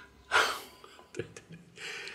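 A man's sharp, audible breath about a third of a second in, then a few small mouth clicks and a softer breath just before he speaks.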